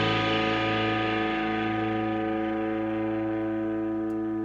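Distorted electric guitar and bass holding the band's final chord, ringing out and slowly fading with a slow wavering in the tone.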